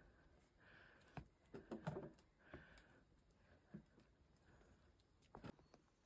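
Quiet, irregular knocks of hiking boots and trekking poles on the rungs of a wooden trail ladder during a steep climb, a few per second at most, with faint breathing between them.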